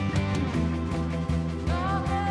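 Live worship band playing a song, with steady drum beats and guitar under sustained chords. A woman's singing voice comes in near the end.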